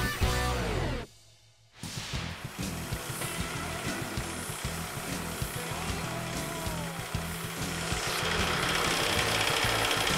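Background music stops about a second in. After a short gap, an electric bench sander runs steadily with a split bamboo strip pressed against it, grinding down the strip's nodes before it goes through the roughing mill.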